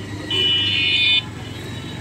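A high-pitched vehicle horn honks once for about a second, cutting off suddenly, over a steady low rumble of street traffic.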